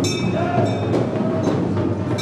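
Loud traditional ritual music: dense, continuous drumming with sharp, rapid strikes and ringing metallic tones held over it.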